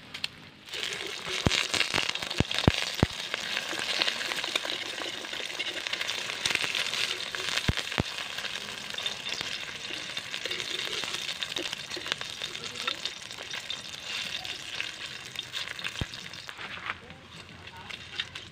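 An egg sizzling in hot oil in a steel wok. The sizzle starts up about a second in and eases near the end. A metal spatula gives a few sharp taps against the wok, most of them between about one and three seconds in, and a couple more around eight seconds.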